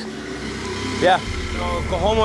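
Auto-rickshaw (tuk-tuk) engine running, heard from inside the passenger cab. It is a low, steady drone that comes in just over a second in.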